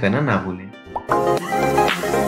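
A voice trails off in the first half second. About a second in, an electronic intro jingle starts with a sharp hit and carries on with a steady beat.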